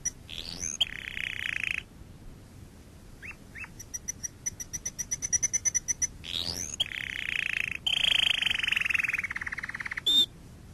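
Animal calls: a rapid run of chirps, then a rising whistle and a long buzzy trill. The whole sequence is heard twice.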